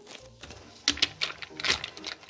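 A spatula knocking and scraping against a stainless steel pot while stirring pasta in cream: a handful of sharp clicks in the second half.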